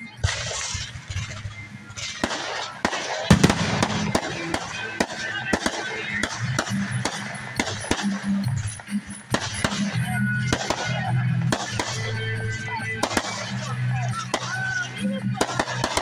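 Fireworks going off in quick succession: repeated bangs and crackling, the loudest burst about three seconds in, with voices and music underneath.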